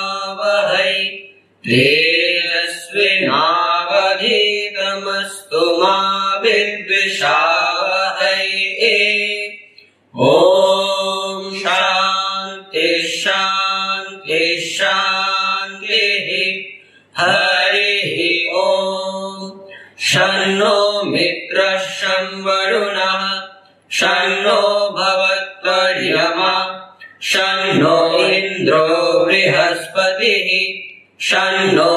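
Vedic invocation chanted in Sanskrit by male students, in phrases of two to three seconds held on a few steady pitches, with short breath pauses between them.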